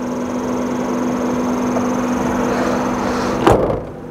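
Steady low hum with a faint high whine and a rushing noise from the motor bay of a switched-on Nissan Leaf electric car. About three and a half seconds in, a single loud thump as the bonnet is shut, and the hum stops.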